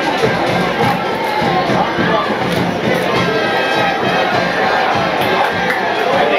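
Football stadium crowd, a steady din of many voices with music mixed in.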